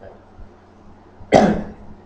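A man coughing once, a single short sharp cough about halfway through, close to the microphone.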